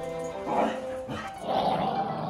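Background music with a dog's short vocal sounds over it, about half a second in and again near the end.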